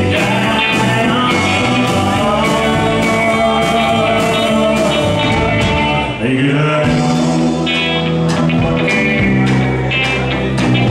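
Live rockabilly band playing: electric guitars, electric bass and a drum kit keeping a steady beat, with a short break and a sliding drop in pitch about six seconds in.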